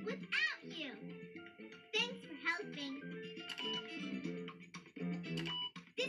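Cheerful children's cartoon end-credits music with a child's voice over it, played from a television.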